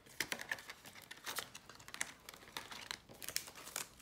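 Clear plastic cash envelope and banknotes crinkling and rustling as they are handled and pulled from a ring binder: an irregular run of small, sharp crackles.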